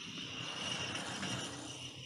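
Quiet outdoor background noise: a steady low haze that swells slightly in the middle, with a thin, steady high tone running through it.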